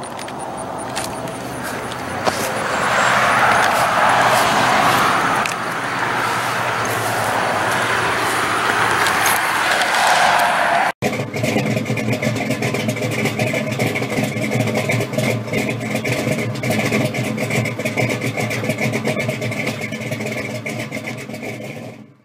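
Noisy outdoor rush with handling rustle for about eleven seconds. After a sudden break, a steady car engine sound takes over with an even, rapid pulse.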